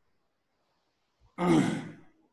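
Near silence, then about one and a half seconds in a man's voice makes one short drawn-out vocal sound, falling slightly in pitch.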